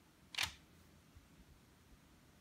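A pointed tool pressing a notch into the rim of rolled-out biscuit dough on baking paper, giving one short, sharp click about half a second in.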